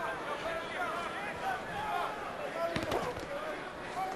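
Boxing arena crowd noise with scattered shouts, and a couple of sharp punch thuds a little under three seconds in.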